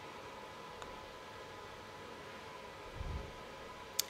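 Quiet room tone through a podcast microphone: a faint steady hiss with a thin, steady high tone. A soft low sound comes about three seconds in, and a short click just before the end.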